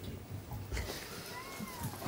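A low thump, then a short squeak that rises and falls in pitch.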